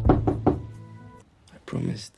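Music with a few sharp, knock-like hits in the first half second that fade away, then a short spoken line near the end.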